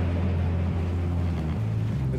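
Steady low rumble of a fishing boat's engine and machinery heard on board, under a hiss of wind and sea noise. The low hum shifts slightly in pitch near the end.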